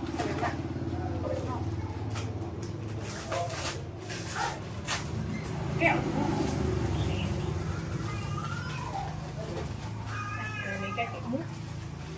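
Plastic bags and snack packaging rustling and clicking as they are handled, over a steady low hum. A brief, wavering, high-pitched voice comes in near the end.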